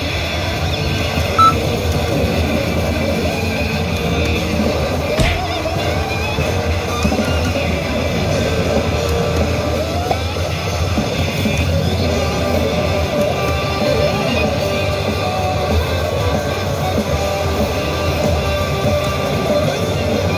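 A pachislot machine's Big Bonus music playing loudly, rock-style with guitar, while the bonus round is being played.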